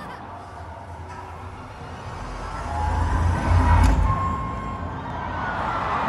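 A quieter stretch in a live arena concert: crowd noise with a deep bass swell that builds to a peak about four seconds in and then falls away.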